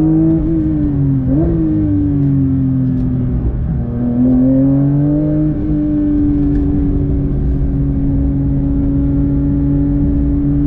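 Porsche 911 GT3's naturally aspirated flat-six heard from inside the cabin while driven on track. Its note jumps up about a second and a half in, sinks to a low point near four seconds, climbs again and then holds a steady pitch.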